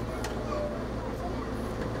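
Diesel railcar's engine running with a steady low hum, heard from inside the driver's cab while the train stands at a station platform.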